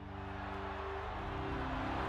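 A low sustained chord from a film trailer score, swelling steadily under a rising hiss as it builds toward a hit. The chord changes about a second in.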